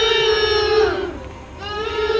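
A high voice singing two long held notes, each about a second long; the first slides down in pitch at its end before the second begins.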